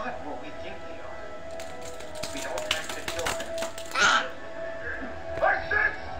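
Animated dragon film soundtrack playing from a television: music with a stretch of rapid clattering clicks in the middle and a loud burst about four seconds in.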